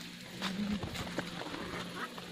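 Domestic chickens clucking, with short clicks and a faint murmur of voices.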